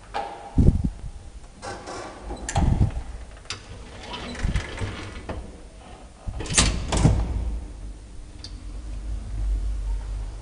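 An old Graham Brothers elevator's doors and gate being worked: a series of bangs, clatters and clicks, the loudest a double bang about six and a half to seven seconds in. After that a low steady hum builds, as the lift runs.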